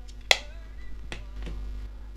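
A single sharp click from the AirPods Pro charging case being handled, about a third of a second in, with a fainter tick about a second in. Faint music plays underneath.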